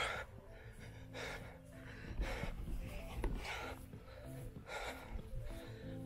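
A man breathing hard after a strenuous bodyweight workout on gym rings, puffing out a heavy breath about every second.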